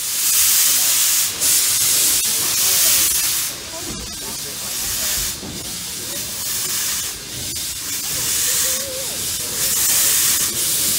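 Heisler geared steam locomotive venting steam low at its side as the train rolls slowly, a loud hiss that swells and falls back every second or two.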